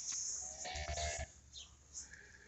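A soft, brief moo from cattle, starting about half a second in and lasting under a second.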